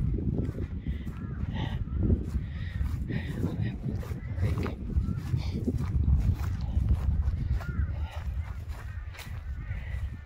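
Wind buffeting the phone's microphone with an uneven low rumble, with birds calling now and then over it.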